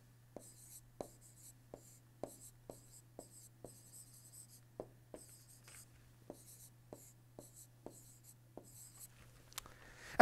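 Faint pen-stylus writing on an interactive display screen: light taps about twice a second with soft scratching strokes between them, over a steady low hum.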